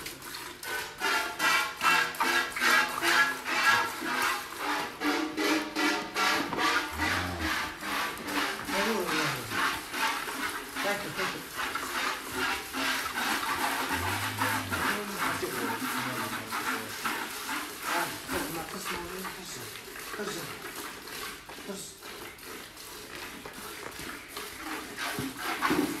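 Hand milking of a Holstein cow: jets of milk squirting into a metal pail in a quick, steady rhythm.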